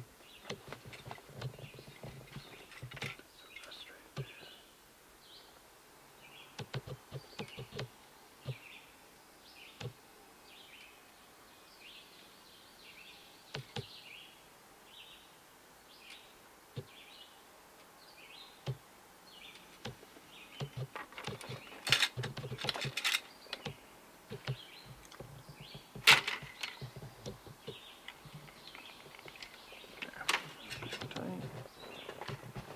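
Birds chirping in the background, a long series of short high calls, with scattered clicks and light knocks of handling close by as fishing line is tied. The loudest sounds are a few sharp clicks about three-quarters of the way through.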